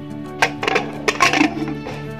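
Aluminium pressure cooker lid being put on and closed: a sharp metal clink about half a second in, then a quick run of clinks and clatter, over steady background music.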